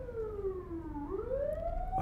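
A siren wailing: its pitch slides slowly down, bottoms out about halfway through, then climbs back up.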